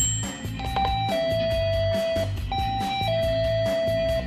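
Apartment door's electronic ding-dong chime, rung twice: each time a short higher note drops to a longer lower note. Background music with a steady beat plays under it.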